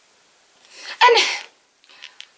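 A woman breathes in quickly and audibly, then lets out a sudden loud, breathy vocal burst about a second in, lasting about half a second.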